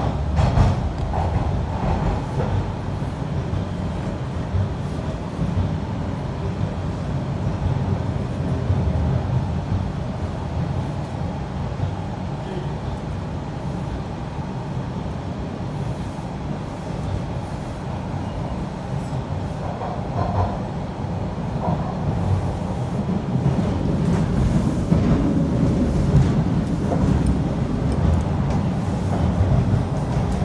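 TTC subway train running between stations, heard from inside the car: a steady rumble of wheels on the rails and the running gear, growing a little louder in the last few seconds.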